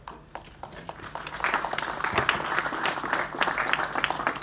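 Audience applause in a meeting room: a few scattered claps at first, building about a second in to steady, dense applause.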